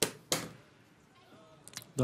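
Fast blitz chess moves: two sharp clacks at the very start, a third of a second apart, from wooden pieces set down on the board and the chess clock's button being hit, then a few lighter clicks near the end.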